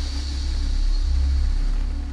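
Electronic outro sound design: a deep bass drone that swells up about a second in, over a thin steady high tone.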